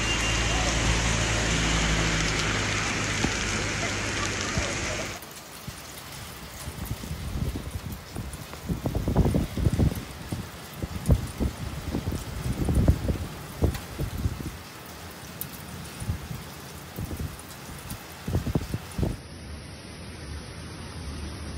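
Heavy rain pouring onto a wet street, a dense steady hiss. About five seconds in it cuts off suddenly, giving way to quieter, irregular low gusts of wind noise on the microphone.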